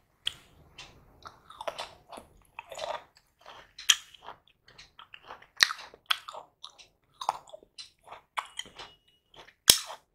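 Close-miked chewing and wet mouth sounds of a person eating by hand, with irregular sharp smacks and clicks. The loudest smack comes near the end.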